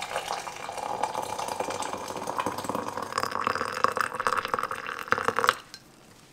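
Hot water poured from an electric kettle into a ceramic cup, a steady splashing stream whose pitch rises a little as the cup fills. The pour stops about five and a half seconds in.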